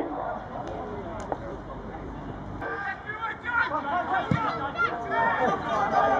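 Voices calling out and chattering across an open football pitch, faint and low at first, then several louder snatches of talk and shouts from about halfway through.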